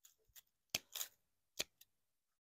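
Hand pruners snipping through old hellebore leaf stems at the base of the plant: a few short, sharp clicks spread over two seconds.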